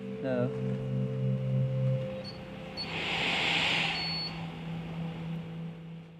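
Soft background music: low held tones that shift to a new chord about two seconds in. A few short high electronic beeps and a brief hiss come through the middle.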